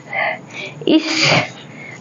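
A woman sneezing once, about a second in: a short intake sound, then a sharp burst of breath.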